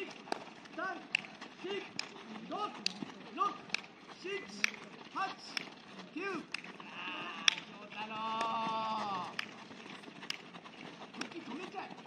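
A coach's voice counting aloud in short, evenly spaced calls, about one every half second or so, over sharp taps of footballs being kicked. A longer held call stands out about eight seconds in.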